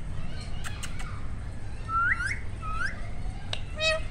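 Rose-ringed (Indian ringneck) parakeet giving three short rising whistled calls, then starting a run of harsh repeated calls near the end. A few sharp clicks come before the calls.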